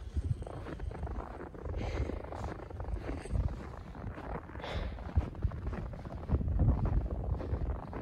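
Footsteps crunching through deep, ice-crusted snow, a string of irregular crunches, over a steady low rumble of wind buffeting the phone microphone.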